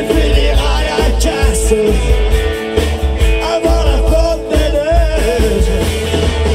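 Live rock band playing loudly: electric guitar, bass guitar and drums, with a strong, pulsing bass line.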